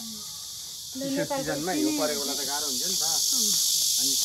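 Steady high-pitched insect buzzing throughout, growing louder near the end, with a person talking over the middle of it.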